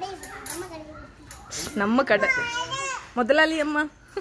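Young children's high-pitched voices: softer talk, then two drawn-out calls, one about halfway through and one near the end.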